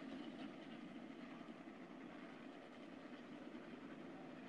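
Distant speedcar engines running, a faint steady drone.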